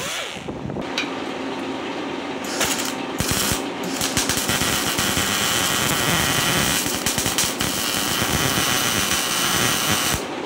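A spinning hand-held air tool winds down at the very start. Then a wire-feed welder's arc crackles steadily while welding on a steel truck frame, with two short breaks a few seconds in.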